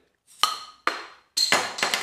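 Crown cap being levered off a glass beer bottle with a lighter: two sharp metallic clicks with a short ring as the lighter catches the cap's edge, then a louder pop about a second and a half in as the cap comes off, followed by a short rush of hiss.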